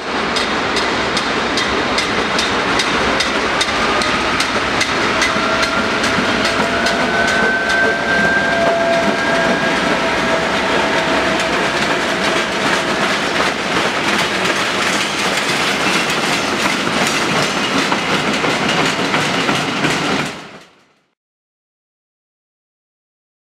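DB class 232 'Ludmilla' V16 diesel locomotive passing with its train: a steady engine drone with the wheels clicking over the rail joints. A thin squeal, rising slightly in pitch, runs through the middle, and the sound fades out about a second before the end.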